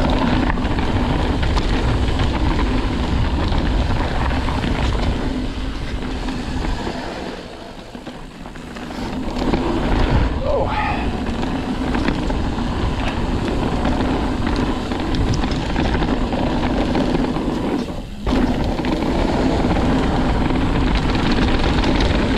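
Wind rushing over the camera microphone and the tyres of an Ibis Ripmo AF mountain bike rolling over a dirt singletrack at speed. It eases off for a couple of seconds near the middle and drops briefly again near the end.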